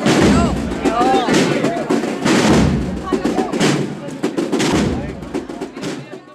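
Procession band music with strong drum strokes, mixed with crowd voices. It fades out near the end.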